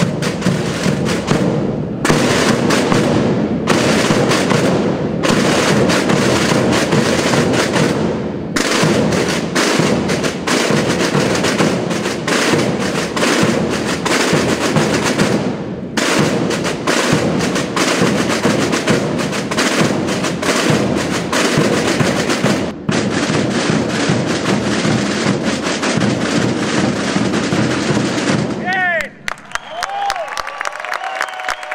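A large drum band of tambores and bass drums, the drums of Calanda, playing a loud, continuous beat. The drumming stops about a second before the end.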